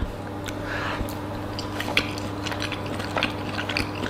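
A person eating with a fork: scattered faint clicks of cutlery and mouth sounds over a steady low hum.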